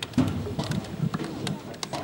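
Indistinct voices of people talking near the microphone, with scattered sharp clicks.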